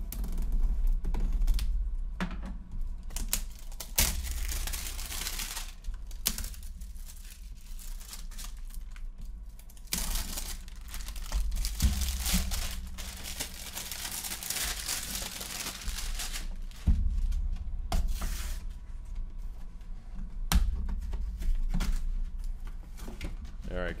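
Plastic shrink wrap on a boxed rotary tool kit being cut with scissors, then crinkled and pulled off in irregular bursts of crackling, with a few knocks from handling the box. Near the end, the box's cardboard sleeve is torn away.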